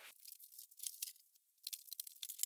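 Faint, irregular crackling and ticking of cardboard boxes being handled and picked up, with a brief lull partway through.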